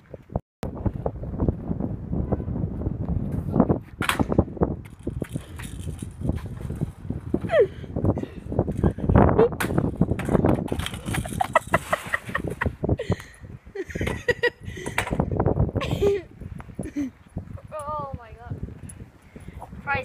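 Kick scooter clattering sharply against asphalt several times as the rider spins and attempts a tail whip, over a steady low rumble, with bursts of voices and laughter.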